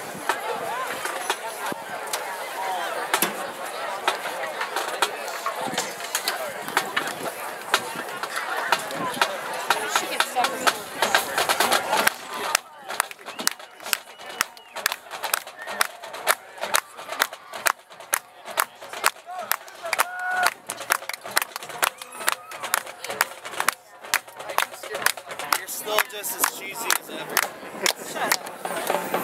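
Spectators chatting in the stands. Then, from a little under halfway through, a marching-band drumline plays a steady cadence of sharp, evenly spaced drum strikes, two or three a second.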